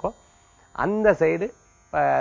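A man speaking: one short phrase about a second in, with pauses on either side.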